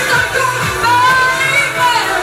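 A woman singing long held notes into a microphone over a pop dance backing track with a steady beat.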